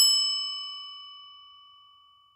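A single bright bell ding, a notification-bell sound effect, struck once at the start and ringing out with a smooth fade that dies away near the end.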